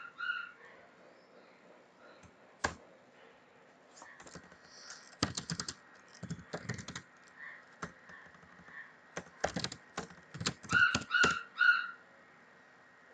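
Computer keyboard typing in several short bursts of key clicks, with a pause of a second or two between bursts. A few short high-pitched beeps sound near the end, the loudest sounds here.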